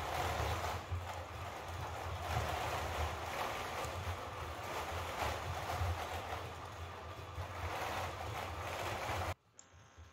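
ANYmal C quadruped robot's joint actuators running under a high-rate (50–200 Hz) learned control policy as it steps: an uneven, pulsing low hum with rough noise, the sound of the motor vibrations that come from aggressive actuation tracking. It cuts off suddenly near the end.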